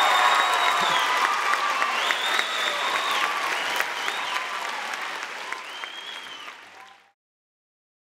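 Audience applauding and cheering, slowly fading, then cutting off about seven seconds in.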